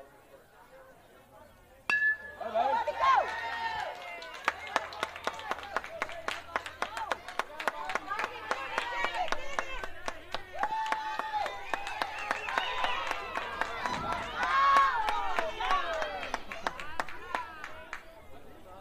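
A baseball bat hits the ball about two seconds in with a sharp, ringing ping. The crowd then breaks into loud cheering and yelling with clapping, which lasts until near the end.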